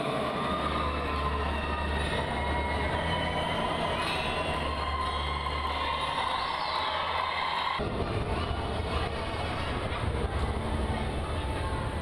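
Indoor sports-hall ambience: a steady low rumble with faint tones and distant voices. It changes abruptly about eight seconds in to a noisier, more even background.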